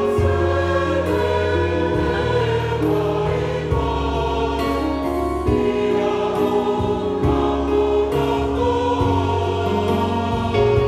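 A Samoan church congregation singing a hymn together in harmony, with long held chords that change every second or two over a steady low bass.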